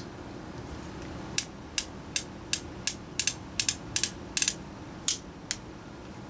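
Ruger New Model Single Six revolver's cylinder clicking as it is turned by hand with the .22 Magnum cylinder just fitted: a run of about a dozen sharp metallic clicks, roughly three a second, starting about a second and a half in.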